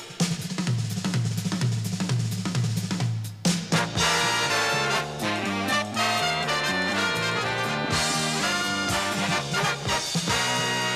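Swing big band playing an instrumental jazz number. It opens with a drum kit break over a moving bass line, and the full band with saxophones and brass comes in about four seconds in.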